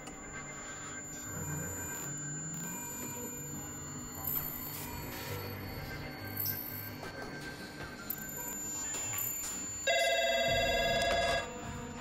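Soft background music with low sustained notes, then near the end a telephone rings once, a trilling ring lasting about a second and a half and louder than the music.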